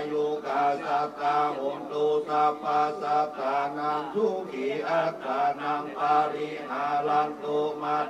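Buddhist monks chanting Pali verses together, on a near-monotone low pitch in a steady syllable-by-syllable rhythm.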